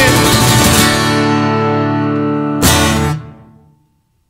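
Acoustic guitar and cajon closing out a song: the full strumming stops about a second in and a chord is left ringing, then one last accented hit on the final chord near the end, cut short and dying away to silence.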